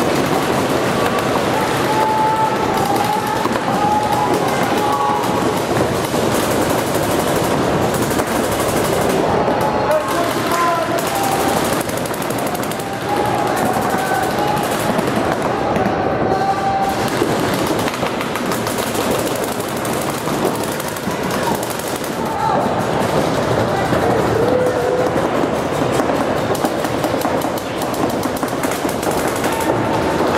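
Paintball markers firing rapid strings of shots throughout, several going at once, with players' voices shouting over the firing.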